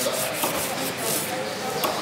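Large knife slicing through a raw tuna loin and scraping along a wet wooden cutting board, a continuous rough rasping with a couple of short knocks.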